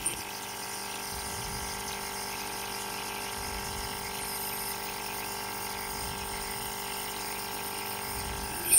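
Nebulizer running with a steady, even hum, misting while someone breathes through its mouthpiece.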